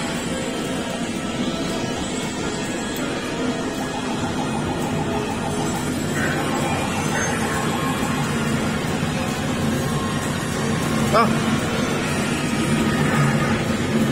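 Arcade din: a steady mix of game-machine music and jingles with background voices.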